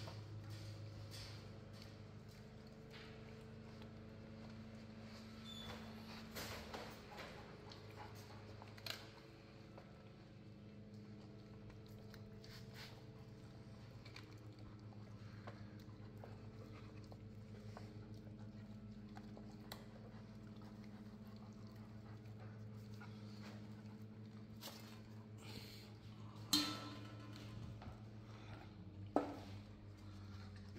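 German Shepherd chewing and crunching a raw chicken drumstick, bone and all, with scattered soft crunches and clicks over a steady low background hum. Two sharper knocks come near the end.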